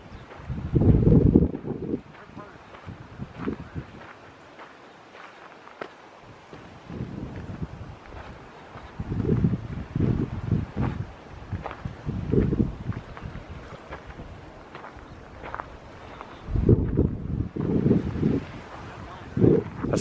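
Wind buffeting the microphone in repeated low gusts, over the faint crunch and rustle of footsteps through dry grass and gravel.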